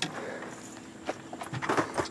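Scattered light knocks and taps of footsteps on a small fishing boat's deck, with a faint steady hum underneath.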